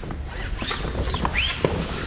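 Large genoa sailcloth rustling and rubbing as it is lifted and pulled by hand, with several short squeaks and a sharp tick.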